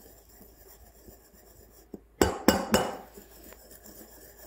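Milk jug of freshly steamed milk knocked on the counter three times in quick succession about two seconds in, each knock ringing briefly, to break up air bubbles in the foam; faint swirling of the milk around it.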